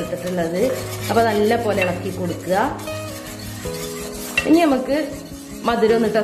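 Metal wire whisk stirring and scraping a thick milky avocado pudding mixture in a pot, over background music with held tones and a gliding melody.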